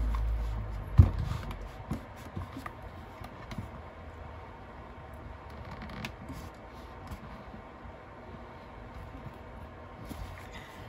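A clothes iron being pushed back and forth over layered fabric on a table: soft sliding and rustling, with one knock about a second in.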